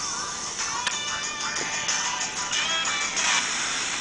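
Music with a singing voice from an FM broadcast station, received by a USB TV tuner dongle and played through a phone's small speaker, thin and tinny over a steady hiss.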